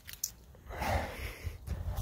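A man's soft, breathy voice trailing into a drawn-out 'I' about a second in, over a low uneven rumble from a handheld phone being moved about.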